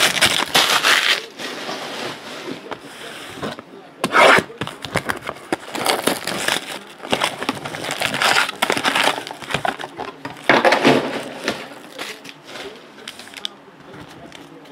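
A Panini Contenders Draft Picks cardboard hobby box being torn open and its foil-wrapped card packs crinkling as they are pulled out and stacked, in several bursts of rustling and tearing.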